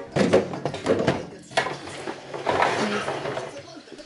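Handling noise from a cardboard advent calendar box being picked up and moved: a run of sharp knocks and rustles in the first second and a half, then quieter rustling, with voices.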